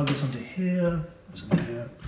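A man's voice making a few short, indistinct sounds, with a sharp knock at the start and another about one and a half seconds in.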